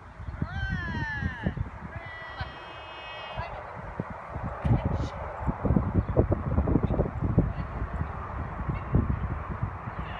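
Two high-pitched animal calls early on: a cluster of falling cries, then a steady held call lasting about a second and a half. Under them is a low rumble with irregular thumps, strongest in the middle.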